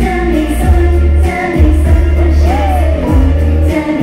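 Thai idol pop song: female voices singing over a backing track with a strong, pulsing bass beat.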